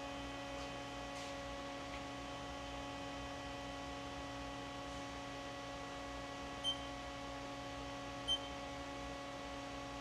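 Steady electrical hum from a powered-up Haas VF-2SS CNC vertical machining center, with several steady tones, its spindle not yet running. Two short high beeps from the control keypad sound about six and a half and eight seconds in.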